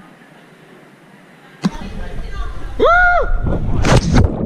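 Rush of air on the camera microphone during a jump from about 8 m, starting abruptly about a second and a half in, with a short rising-and-falling yell partway down and a loud splash as the jumper hits the water at the end.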